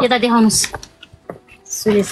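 A voice speaking in the first half-second, then a quieter stretch with a few single sharp clicks and short hisses.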